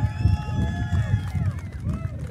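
Gusty wind buffeting the microphone, giving an uneven low rumble, with faint thin ringing tones above it.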